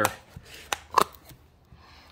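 Plastic lid being prised off a Play-Doh tub: a few light clicks and a pop about a second in.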